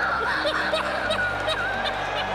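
Laughter in short, bouncing bursts over a steady background music bed.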